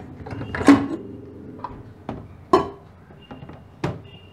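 Lid of a Wonderchef Nutri-Pot electric pressure cooker being twisted open and lifted: a series of plastic-and-metal clunks and clicks, the loudest about two-thirds of a second in, with further knocks near the middle and near the end.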